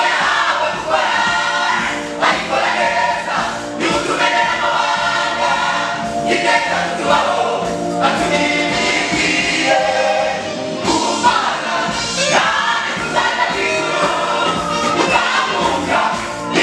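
Gospel choir of women and men singing together through microphones, a continuous lively song with no breaks.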